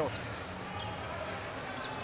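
Arena crowd murmur during a basketball game, with a basketball bouncing on the hardwood court.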